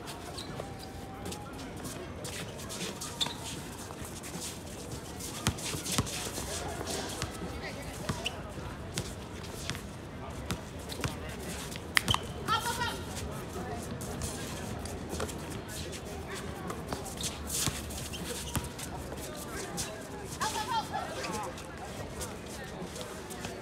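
Basketballs bouncing on a hard outdoor court, with scattered sharp bounces, the loudest about six seconds in and near the middle.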